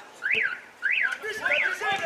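A high whistling tone that rises and falls in pitch three times in quick, even succession.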